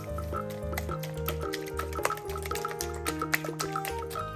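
Background music with a steady beat, over a wire whisk beating eggs in a glass bowl, its wires clicking rapidly and irregularly against the glass.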